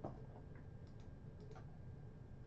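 A few faint, short clicks over a low steady hum, the first and loudest right at the start.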